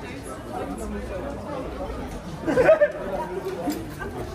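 Chatter of passers-by, several voices talking at once, with one voice close by and louder a little past the middle.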